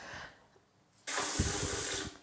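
Handheld bidet sprayer shooting a jet of water into a ceramic toilet bowl: a steady hiss that starts abruptly about a second in and cuts off near the end, as the spray pressure is tested.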